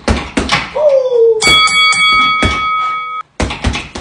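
Punches thudding on a double-end punching ball as it rebounds on its cord, a quick irregular string of thuds. From about a second and a half in, a steady ringing tone with several pitches sounds over them for nearly two seconds and cuts off suddenly.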